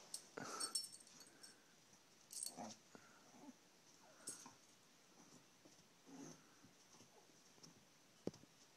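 Faint wheezing, snuffling breaths from a chihuahua in a few short bursts a couple of seconds apart while she humps a stuffed toy elephant.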